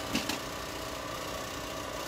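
Steady hum of laboratory machinery running, a few held tones over an even noise.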